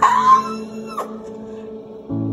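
A brief high-pitched vocal sound right at the start, then a single sharp click about a second in, over faint steady tones.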